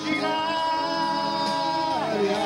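Karaoke singing into a microphone over a backing track: one long held note for about a second and a half, released near the end.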